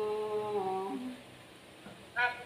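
A woman's voice holding one long sung note, level and drifting slightly down, which stops about a second in.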